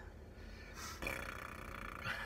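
A man's drawn-out hesitation sound, a low 'uhh' or 'hmm' while deciding, starting about halfway through after a short breath.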